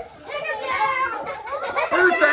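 A group of second-grade children's voices chattering over one another excitedly, the noise building about a quarter second in.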